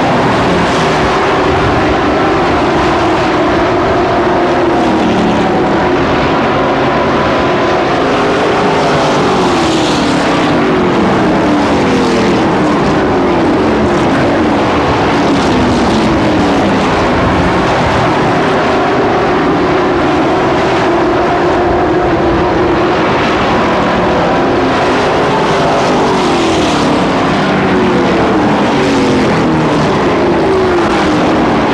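Engines of several racing pickup trucks running hard together around an asphalt oval, loud throughout. Their pitch keeps sliding down and climbing back up as the trucks sweep past and go through the turns.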